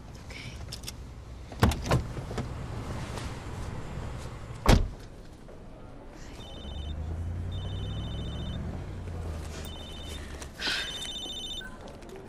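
Car door sounds: a couple of clicks, then a loud slam about five seconds in. After that a mobile phone rings in short, repeated bursts of a trilling electronic tone.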